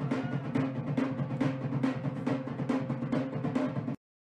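Drum-driven wedding dance music: a fast, steady drumbeat with held tones underneath.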